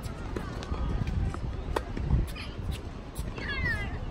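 Tennis balls struck by rackets and bouncing on a hard court during a rally, as a handful of sharp pocks over steady wind rumble on the microphone. Near the end comes a brief high squealing call that drops in pitch several times, from a source that cannot be made out.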